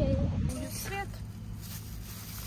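Wind buffeting the microphone, cutting off abruptly about half a second in. A low steady hum inside a car follows, with a brief snatch of a voice.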